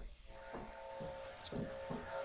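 Faint steady hum made of several mid-pitched tones, with a few brief, faint voice sounds over it.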